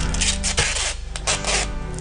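Adhesive tape being pulled off a wide roll in about four short rips, over background music.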